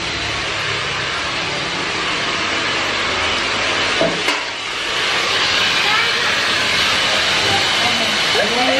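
Hand-held hair dryer running, a steady rushing hiss that grows louder about five seconds in.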